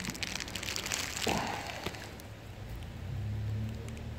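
Light crackling and small clicks of plastic being handled: fingers working the plastic hose connector and sleeve at a radiator, with plastic sheeting crinkling under the hand. The clicks are densest in the first second, and a low hum comes in near the end.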